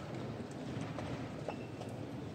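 Light clicks of a chess clock button being pressed and pieces tapped on a wooden board, a few sharp knocks about half a second apart, over the steady background hum of a busy playing hall.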